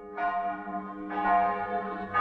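Church bells ringing, a new stroke about every second, each left ringing under the next and growing louder.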